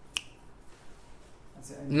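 A single sharp click just after the start, in a quiet pause in the room.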